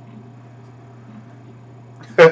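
Quiet room tone with a steady low hum and faint hiss; no distinct sound event.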